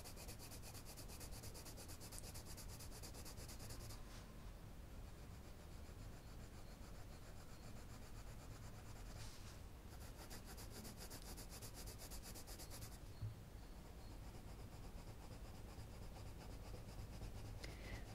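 Faint scratching of an Arteza Professional coloured pencil rubbed over coloring-book paper as it shades in a background.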